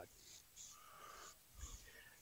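Near silence in a pause between speakers, with only faint breath noise.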